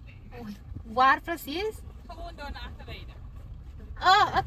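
People talking inside a slowly moving car, over the steady low rumble of the car's engine and tyres, with a louder burst of voice about a second in.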